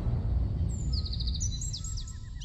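Birds chirping: a quick run of short high notes about two-thirds of a second in, followed by brief high whistles, over a low rumble that fades away.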